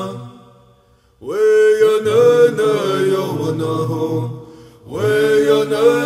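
A man singing a Native American Church peyote song in chanted syllables. A held phrase fades out in the first second, the next phrase comes in strongly just over a second in, and after a short break near four and a half seconds another phrase begins.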